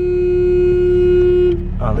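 A car horn held in one long, steady, single-pitched blast that cuts off about a second and a half in, with a brief fading echo.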